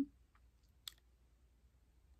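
Near silence with one brief, faint click just before a second in.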